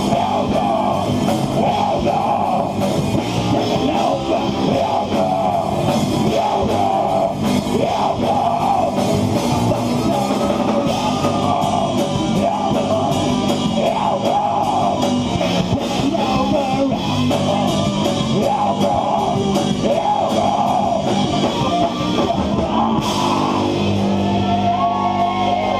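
Live rock band playing loudly, with distorted electric guitar and a drum kit.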